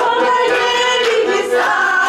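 A small ensemble of older women singing together in chorus, holding long drawn-out notes.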